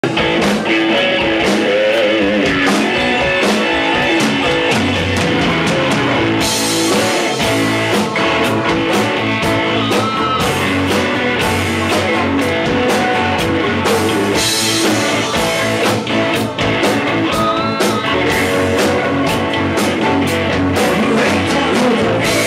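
Live rock band playing electric guitars, bass guitar and drum kit, with a steady beat of drum and cymbal hits.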